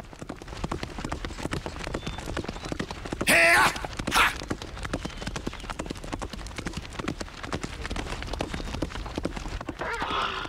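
A horse galloping on a dirt path, its hooves beating in a fast, steady rhythm, as a cartoon sound effect. A loud horse whinny comes about three and a half seconds in.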